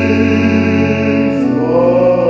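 A man singing a slow hymn solo with piano accompaniment, holding a note and then moving up to a new one about one and a half seconds in.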